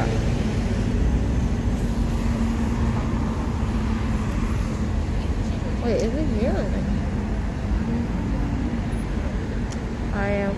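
Road traffic at a busy city intersection: a continuous rumble of cars and engines, with a steady engine hum through most of it.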